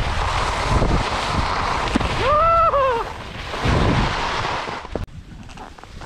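Wind rushing over an action camera's microphone and skis scraping over packed snow while skiing. A brief call that rises and falls comes about halfway, and the rushing noise drops off near the end.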